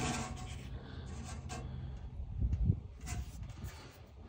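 Faint rubbing and scratching of a cotton swab cleaning the glass lens of a torpedo heater's flame-sensing photo eye. A steady low hum underneath stops about halfway through, and there is a soft low thump shortly after.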